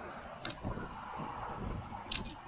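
Steady noise of motorway traffic, with gusty wind rumbling on the microphone.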